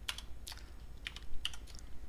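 Typing on a computer keyboard: about half a dozen irregularly spaced keystrokes in two seconds.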